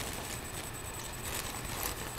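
Plastic mailing bag rustling and crinkling as it is handled, a few soft crackles over steady microphone hiss.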